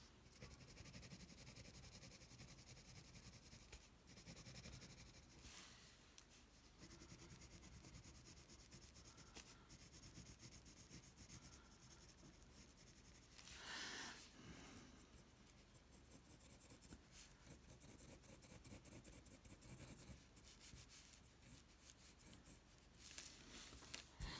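Faint pencil on paper: soft scratching of shading strokes, with a slightly louder rub about fourteen seconds in.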